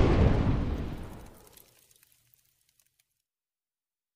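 A loud, deep boom that dies away over about two seconds.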